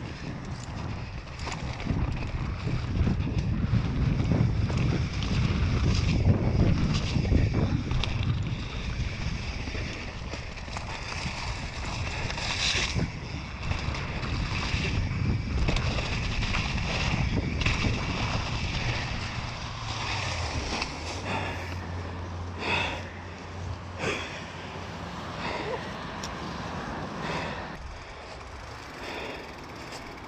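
Mountain bike riding fast down a leaf-covered dirt trail: tyres rolling over leaves and ground, with frequent knocks and rattles from the bike over bumps. Wind buffets the camera microphone, heaviest in the first third.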